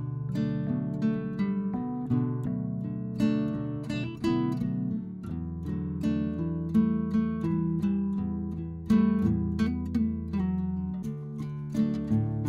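Background music: plucked acoustic guitar playing a gentle chord progression.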